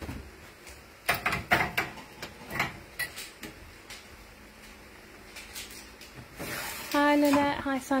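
Steel plates of a rubber-stamp vulcanizing press knocking and scraping as the loaded plate tray is slid in by its handles. The clatter comes in a cluster between about one and three seconds in, with fainter clicks afterwards.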